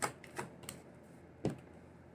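Tarot cards being handled and laid down on a table: a few short, sharp clicks and taps, one right at the start and a louder one about one and a half seconds in.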